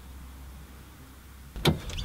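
Faint room tone with a low hum, then, near the end, a sudden clunk of a car door as a man opens it and climbs into the front seat.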